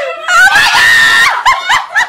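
A woman's high-pitched excited scream, rising and then held for about a second, followed by short bursts of laughter.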